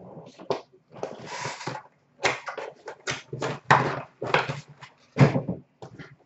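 Trading cards and their packaging being handled and set down on a glass counter: irregular taps, rustles and short slides, starting and stopping throughout.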